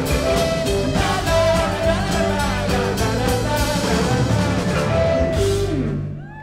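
Live rock band playing at full volume, with drums, electric guitars and keyboard and voices singing along. At the very end the band cuts off, leaving one held low note as the song ends.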